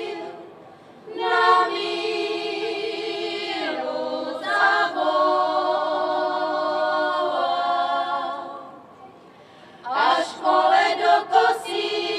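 Women's choir singing unaccompanied in several voices, with long held notes broken by short pauses between phrases, the last phrase near the end quicker and choppier.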